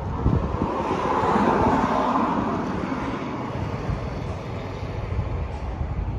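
Background vehicle noise: a rumble swells to its loudest about two seconds in, then eases to a steady rumble.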